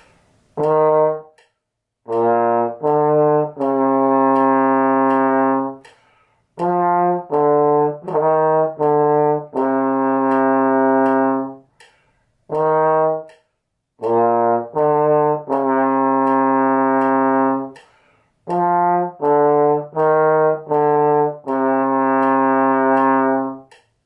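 Tenor trombone playing a slow beginner exercise line twice through: short separate notes leading into long held notes, each held note a half note tied to a half note so it sounds as one whole note.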